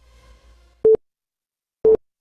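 Countdown timer beeping: two short, identical mid-pitched beeps exactly a second apart, ticking off the last seconds of the count to zero.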